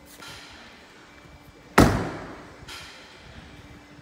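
The front door of a 2019 BMW 3 Series saloon being shut, a single loud slam a little under two seconds in.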